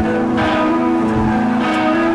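Live rock band's electric guitars holding long, ringing chords through a PA, with a few light cymbal or drum hits.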